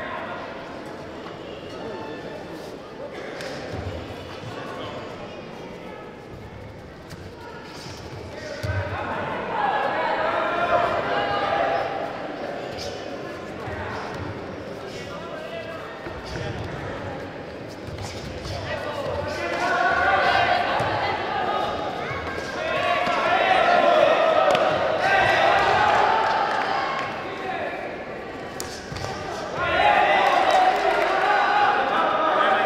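Coaches and spectators shouting over the dull thuds of kicks and punches landing in a full-contact karate bout. The shouting swells about nine seconds in and is loudest from about twenty seconds on.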